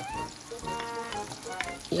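Sliced onion and freshly added ginger sizzling and crackling in hot oil in a nonstick wok, with background music playing over it.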